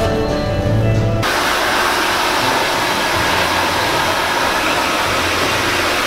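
Background music for about the first second, then a hand-held hair dryer cuts in abruptly and runs steadily as a loud, even rush of air, rough-drying wet hair.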